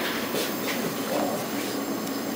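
Steady running noise of laboratory machinery, with a low hum and two faint ticks about half a second in.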